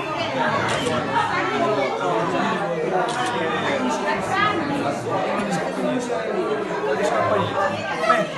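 Several people talking at once in a room: a steady overlapping chatter of voices.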